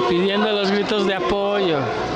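A voice calling out in long, drawn-out words, the last one sliding down in pitch near the end.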